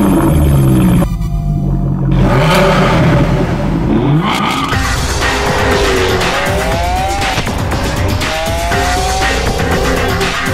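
Jaguar F-Type sports car engine revving, its pitch rising and falling repeatedly, then several rising sweeps in the second half as it accelerates, mixed with background music.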